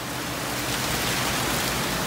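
Steady rushing hiss of running water in fish-holding tubs, growing gradually louder.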